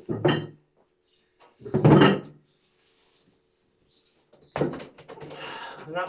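Straining grunts and breaths from a lifter under a 103 kg plywood loadable shield, then a cluster of wooden knocks and thuds near the end as the shield is lowered. The weights inside are not packed tightly and shift.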